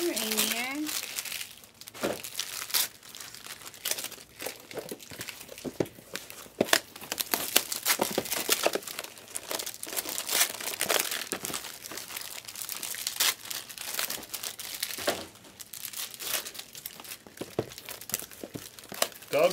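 Foil trading-card pack wrappers crinkling and rustling as packs and cards are handled, with many quick, irregular sharp clicks.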